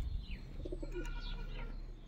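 Wild birds chirping with short, quick falling notes, joined by a low cooing call from a pigeon or dove about half a second in.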